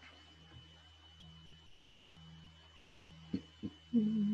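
Electric fan running with a low steady hum and a faint high whine, quiet in the room. Two short soft knocks come near the end.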